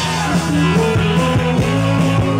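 Live rock band playing a song at full volume: electric guitars and drums with a steady beat.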